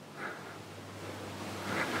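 Wind on the microphone outdoors, a soft steady rush that grows a little louder near the end.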